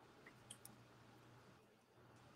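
Near silence, broken about half a second in by a couple of faint, short clicks of small plastic Gunpla model-kit parts being handled and fitted together.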